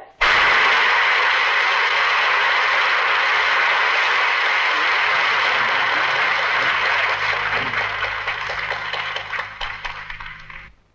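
Audience applauding, starting all at once and thinning out over the last few seconds into separate claps.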